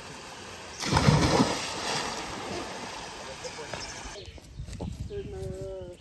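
A person jumping into a pond: a loud splash about a second in, then water noise that dies away over the next few seconds.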